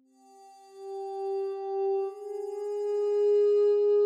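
Ambient background music of held, ringing bell-like tones. One note enters at the start, and a slightly higher note takes over about two seconds in, swelling louder and sustaining.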